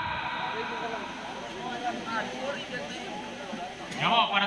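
Crowd chatter: many people talking at once in an indistinct, steady babble, with no single voice standing out.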